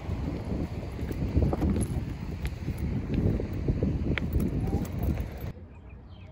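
Wind buffeting the microphone as a gusty low rumble, with a few sharp clicks scattered through it; it cuts off suddenly about five and a half seconds in.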